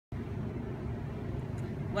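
Steady low outdoor rumble, with no distinct events; a woman's voice begins just at the end.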